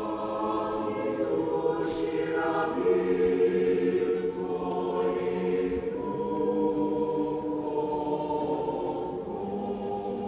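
Mixed choir of men's and women's voices singing slow, long-held chords.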